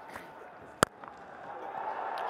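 Cricket bat striking a fast-bowled ball once, a single sharp crack as the ball is smashed back over mid-off, followed by stadium crowd noise swelling near the end.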